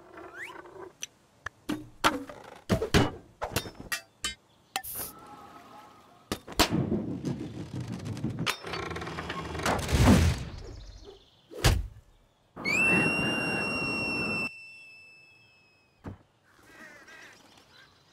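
Cartoon sound effects: a quick run of sharp knocks and thuds, then a louder noisy rush that builds to a peak about ten seconds in and stops, a single hit, then a steady high squealing tone for about two seconds.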